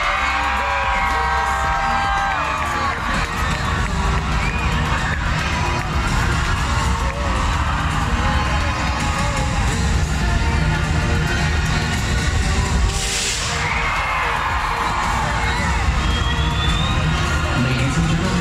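Loud music over an arena sound system with a crowd cheering and screaming over it, strongest in the first two seconds and again after a short burst of noise about thirteen seconds in.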